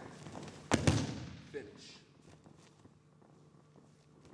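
A judoka thrown with tai otoshi landing on the tatami mat: two sharp thuds in quick succession about a second in, ringing briefly in the hall.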